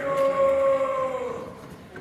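A man's long held yell on one sustained note, lasting about a second and a half and dropping in pitch as it ends.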